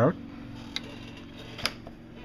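Wacom Cintiq 22HD pen nib tapping the display's glass twice, two light ticks about a second apart, over a steady low hum.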